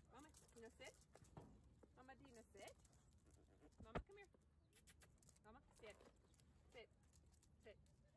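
A young dog's short, high whining cries as it jumps up at its handler, with a single sharp knock about four seconds in when the dog bumps into the phone.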